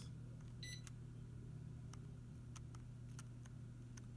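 Touchstone electric fireplace giving one short high beep about half a second in, acknowledging a button press on its remote. A few faint clicks follow, over a low steady hum.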